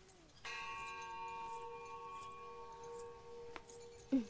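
A bell-like ringing tone with several steady overtones, starting about half a second in and held for about three seconds before it stops with a faint click.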